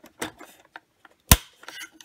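Light hard-plastic clicks and taps as a toy artillery shell is pushed into the breech of a plastic toy M1A2 tank, with one sharp, loud click a little past halfway.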